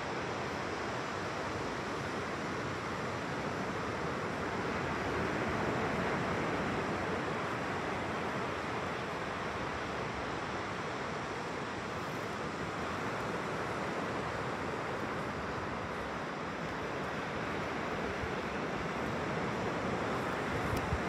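Ocean surf breaking and washing up the beach, a steady rushing hiss that swells slightly about six seconds in.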